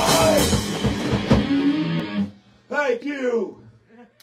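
Live rock band of electric guitar, electric bass and drum kit playing the final bars of a song, which stops about two seconds in. A voice then calls out briefly.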